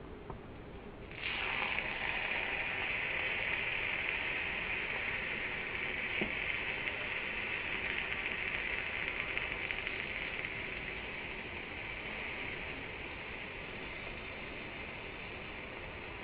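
Pancake batter frying in a hot non-stick pan, just flipped: about a second in, a steady sizzle starts suddenly and slowly dies down.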